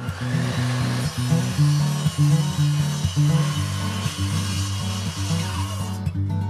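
Outro music with a strummed guitar over a stepping bass line, starting abruptly; a bright hissing layer runs over the music and fades out near the end.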